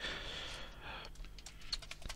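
Typing on a computer keyboard: a few quick keystrokes in the second half.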